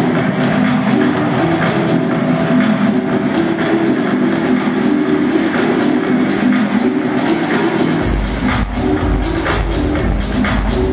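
Loud electronic dance music from a DJ set playing over a club PA, a repeating synth riff carrying the track; about eight seconds in, a heavy bass line and kick drop in underneath.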